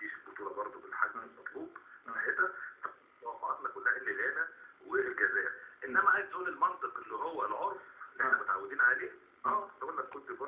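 Speech only: a man talking in short phrases with brief pauses, sounding thin and narrow like an old broadcast.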